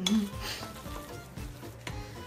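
A fork stirring and scraping through a thick tuna-and-potato mixture in a glass bowl, with a sharp clink of metal on glass near the end. Faint music plays underneath.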